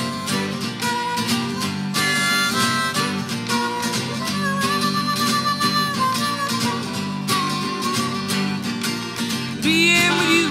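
Harmonica solo over a strummed acoustic guitar, played as an instrumental break in the song, with one long held note about halfway through.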